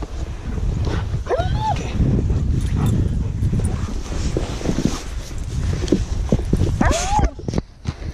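A young German shepherd barks twice, about a second and a half in and again near the end. Under the barks runs a steady low rumble of wind and body movement on the microphone as the rider settles onto a plastic sled in the snow.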